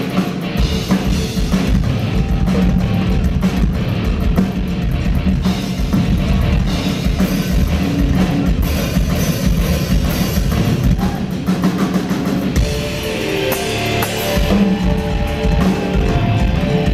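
Live rock drum solo on a full drum kit with cymbals, played fast and dense. Near the end, sustained pitched notes join the drumming.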